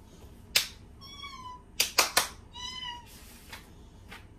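Two short, high-pitched animal calls, each about half a second long, one about a second in and one near the end. Four sharp clicks come around them: one about half a second in and three in quick succession near the middle, and these clicks are the loudest sounds.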